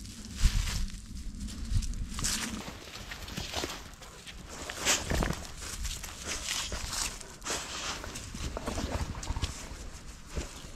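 Irregular rustling and crunching of footsteps on grass and dry fallen leaves as Labrador retrievers move about.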